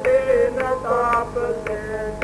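A devotional shabad being sung, the voice gliding over steady held instrument notes, with a sharp percussive click about twice a second keeping the beat.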